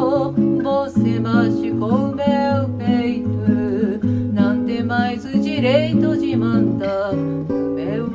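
A woman singing a melody with vibrato on her held notes, over an acoustic guitar accompaniment whose bass notes move every half second or so.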